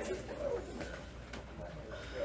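Faint, distant speech of a student answering, halting and low, over steady room hum, with a few light clicks.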